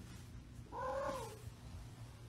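A domestic cat gives a single meow about half a second long near the middle, its pitch rising and then falling.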